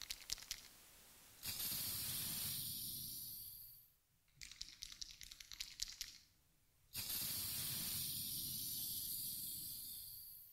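Hiss-and-crackle intro of a hip-hop dance track played over the PA. Two stretches of steady hiss each start suddenly and fade away over a couple of seconds, with scattered crackling clicks between them.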